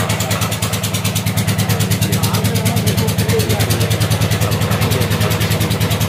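An engine running steadily at an even, rapid beat.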